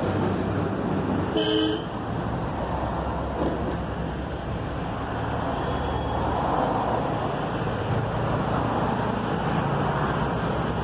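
Steady outdoor background rumble, with a short horn-like toot about a second and a half in.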